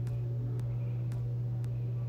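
A steady low hum with a few faint soft clicks.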